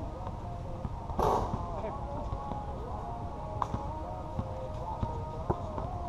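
Outdoor pickup basketball: players' voices calling across the court over a steady low wind rumble on the microphone, with a short loud hit about a second in as the shot reaches the hoop, and a couple of sharp ball bounces later.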